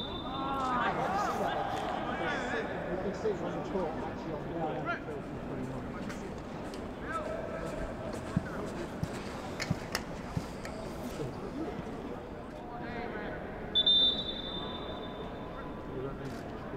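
Referee's whistle: one short, steady, high blast near the end, after men's shouts and calls in the first few seconds.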